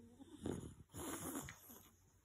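English bulldog snoring in its sleep: two noisy breaths, a short one about half a second in and a longer one about a second in.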